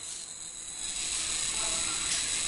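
Steady background hiss with faint high-pitched electrical tones, a little louder after about a second: room tone, with no distinct event.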